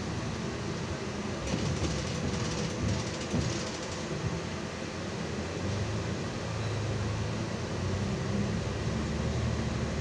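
Cabin running noise of a Solaris Urbino 18 articulated city bus on the move: a steady low drivetrain hum mixed with road noise, the low hum growing stronger about halfway through.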